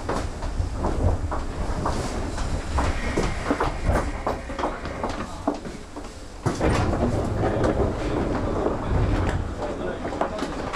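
Station platform noise with the train standing at the platform: a run of short knocks and clatter over a low rumble, with indistinct voices, getting louder about six and a half seconds in.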